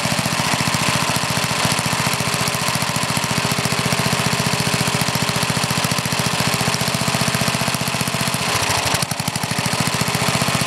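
Old single-cylinder Briggs & Stratton engine idling with a steady, even firing beat while the idle mixture screw on its one-piece Flo-Jet carburetor is turned out to run it rich. Near the end the running dips briefly, then settles back.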